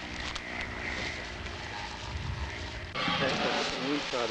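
A steady engine drone, with a stack of even tones under a noisy hiss. About three seconds in the sound changes abruptly to a louder, hissier noise.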